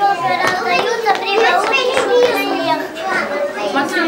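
Young children's voices chattering and talking over one another.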